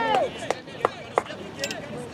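A shout that trails off just after the start, then three sharp knocks about a third of a second apart and a few fainter clicks, over faint outdoor voices.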